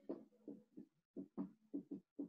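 Whiteboard marker working on a whiteboard: about eight short, faint strokes and dabs in quick succession as letters and dots are put down.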